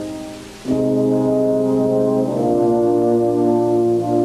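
Orchestral brass, French horns among them, playing slow held chords in a concert hall: one chord dies away, a new full chord enters firmly just under a second in, and moves to another chord a little after two seconds.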